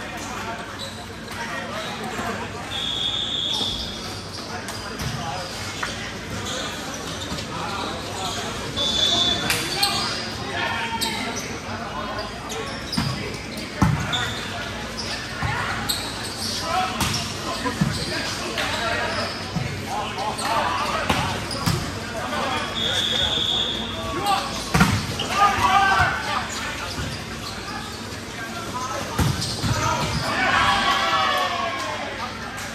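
Volleyballs being hit and bouncing on an indoor court, with sharp smacks scattered through the rally and indistinct shouting voices echoing in a large gym hall. Three short high-pitched tones stand out, near the start, about a third of the way in and late on.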